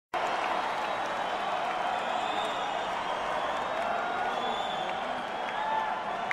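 Arena crowd applauding and cheering before a song, a steady wash of clapping and voices with a few faint shouts and whistles.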